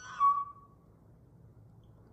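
A woman's short high-pitched 'ooh' of delight, held about half a second and falling slightly in pitch.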